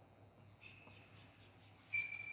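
Quiet room tone with a faint, steady high-pitched tone that comes in about half a second in, and a brief louder sound right at the end.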